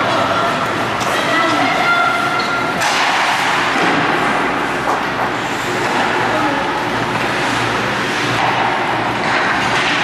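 Ice hockey rink ambience: indistinct voices of players and spectators calling out over a steady arena noise, with a few sharp thuds during play.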